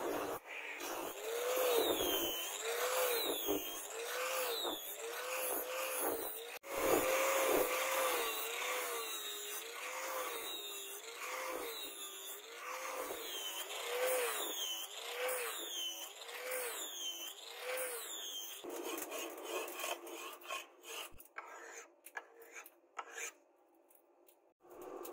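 Handheld angle grinder with an abrasive disc grinding a steel knife blade, its pitch rising and dipping about once a second as the disc is worked across the blade. The grinding stops about three quarters of the way through, followed by a few scattered clicks.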